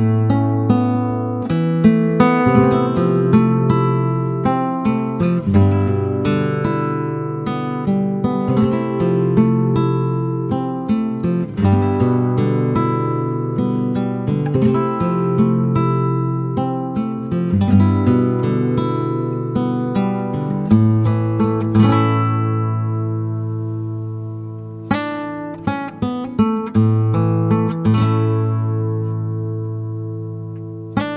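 Calm instrumental music of plucked acoustic guitar notes that ring and fade. The playing stops for a few seconds about three-quarters of the way through, letting the last notes die away, then picks up again.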